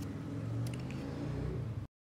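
A low, steady background hum with a couple of faint clicks about two-thirds of a second in; the sound cuts off abruptly to silence just before the end.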